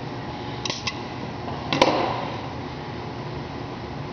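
A few quick small clicks, then one sharper knock about two seconds in, as a compression tester's gauge and hose fitting are handled at the cylinder head of a three-cylinder two-stroke snowmobile engine. A steady low hum runs underneath.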